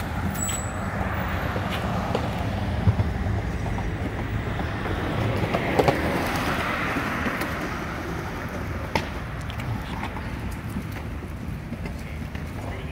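Street traffic: a steady rumble of cars on the road, swelling louder and fading as a vehicle goes by around the middle, with a few brief knocks.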